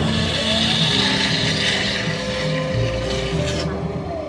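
Electric potter's wheel spinning with a steady noise, under background music.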